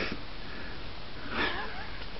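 Steady low hiss, with one short sniff about one and a half seconds in.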